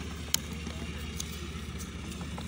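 Steady low hum of distant engine-driven machinery, with one sharp click about a third of a second in.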